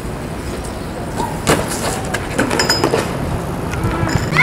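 Outdoor street noise with wind on the microphone, broken about a second and a half in by a sharp impact and then a short clatter of knocks: a BMX bike and rider hitting the paving stones in a crash.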